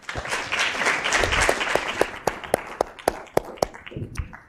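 Audience applauding: a burst of clapping that starts suddenly, then thins to a few scattered separate claps and dies away near the end.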